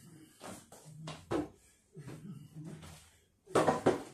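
Knocks and scrapes of wooden chairs being handled and shifted on a hard floor, with a loud scrape about three and a half seconds in.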